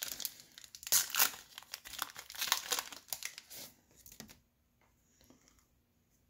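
A baseball card pack's wrapper being torn open and crinkled by hand: a dense run of crackles for about the first four seconds, dying away to near quiet after that.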